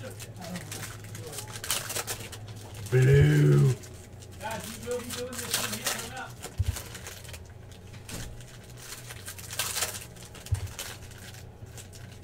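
Foil trading-card pack wrapper crinkling and cards being slid and handled, with many small crackles. A short low voice hum about three seconds in is the loudest sound, with a softer murmur a second later.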